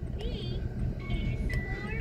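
Children's tablet game playing soft electronic jingle sounds: a few short gliding notes, then a steady held tone through the second half, over a low steady hum.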